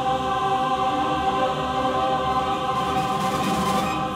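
Large mixed choir holding one long sustained chord, which is released right at the end.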